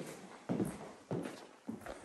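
Footsteps of hard-soled shoes on a porcelain tile floor: about four steps at an even walking pace.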